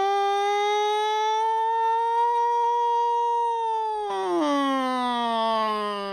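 A single voice holding one long sustained vocal tone that rises slightly, then glides down about four seconds in and carries on at a lower pitch.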